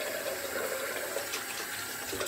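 Bathroom tap running steadily into the sink.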